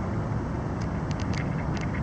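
Steady low outdoor rumble with no pitched sound in it, with a few faint clicks between one and two seconds in.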